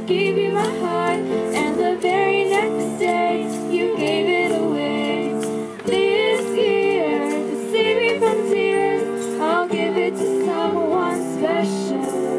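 Young female voices singing a holiday song through a PA system, accompanied by keyboard and acoustic guitar.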